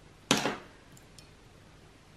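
One short, sharp handling sound from a watercolour marker being put to a palette, about a quarter second in, followed by two faint ticks about a second in; otherwise near silence.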